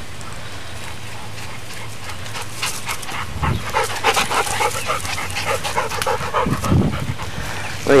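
Dog panting in quick, uneven breaths, starting a few seconds in, over a steady low hum.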